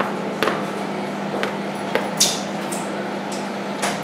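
A few light taps and a brief scrape of paint being laid onto a canvas, over a steady low hum in the room.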